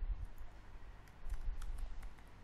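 Computer keyboard keystrokes: a few soft clicks of keys being typed, mostly in the second half, over a low room rumble.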